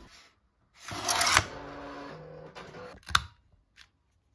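Paper and stickers being handled on a desk: a rustling scrape about a second in, then a single sharp click near the end.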